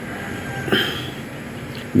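Steady background din of a crowded pool hall, with one short sharp click a little under a second in.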